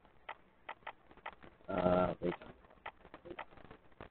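Computer keyboard keys clicking in irregular runs of keystrokes, as text is typed and deleted in a code editor.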